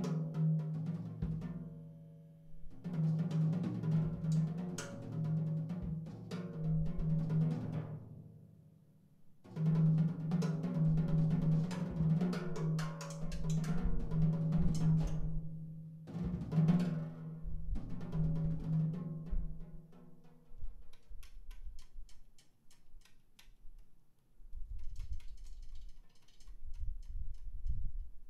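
Free-improvised jazz played live on a drum kit, with rolls and cymbals over a held low note, in loud swells that break off briefly about 2, 9 and 16 seconds in. After about 20 seconds it thins to sparse soft drum hits and light ticking.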